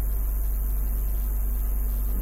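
Steady low electrical hum with an even hiss underneath, unchanging throughout.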